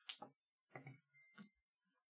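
Faint, scattered short clicks and scratches of a felt-tip marker being set to and drawn on a card, four or five small sounds with silence between them.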